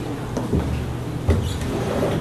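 Steady low room hum with two dull knocks, about half a second in and about a second and a quarter in, the second the louder.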